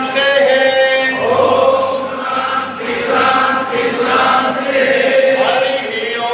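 A group of voices chanting a Hindu mantra together in unison, in long held tones.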